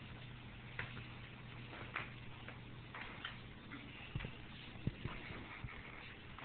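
A cat playing with a ribbon on carpet: scattered, irregular light clicks and taps, the sharpest about five seconds in.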